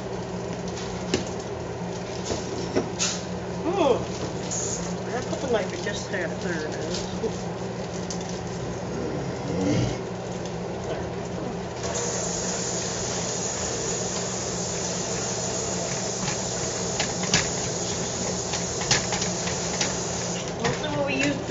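A kitchen knife chops leafy greens on the counter with scattered sharp clicks. About twelve seconds in, a steady hiss of tap water starts running into a stainless steel sink and keeps going.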